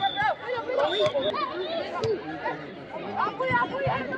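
Several voices on a football pitch, shouting and calling over one another, with a couple of sharp knocks, one about two seconds in and another near the end.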